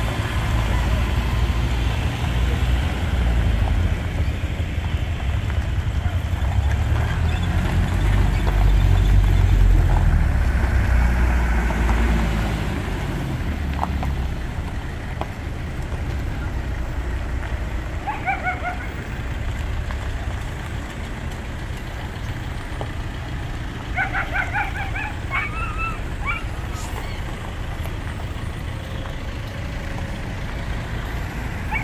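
Engines of pickup trucks and motorcycles passing slowly on a dirt road, a low rumble that swells to its loudest about ten seconds in and then eases off. A few short high calls come through near the middle and again later.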